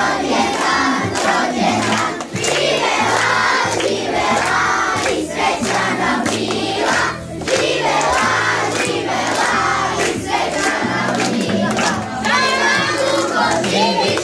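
A group of children singing a birthday song together and clapping along, over backing music with a repeating bass line.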